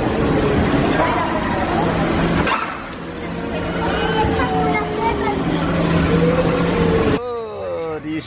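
Busy bumper-car hall din: electric bumper cars running, with people's and children's voices mixed in. Near the end it cuts off abruptly to a quieter room with a single voice.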